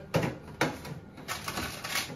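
Frozen food packages being shifted about in a freezer's wire basket: a few light knocks and clatters with rustling in between.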